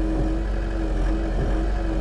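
Mecalac 6MCR compact excavator's diesel engine running steadily, with a constant whine over it and a few brief dips in pitch as the boom hydraulics are worked.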